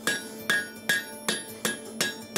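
Blacksmith's hammer striking a red-hot horseshoe on the horn of a steel anvil: a steady run of ringing blows, about three a second.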